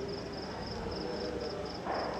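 Crickets chirping in a high, even pulse of about four to five chirps a second, over faint background hiss.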